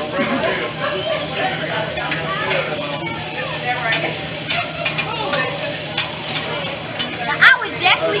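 Fried rice sizzling on a steel hibachi griddle as it is stirred and scraped with metal spatulas, with sharp clicks of the spatulas striking the steel now and then.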